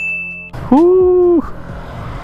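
Edited-in comedy sound effects: a short high-pitched beep, then a loud held note a little under a second long that bends up at the start and down at the end.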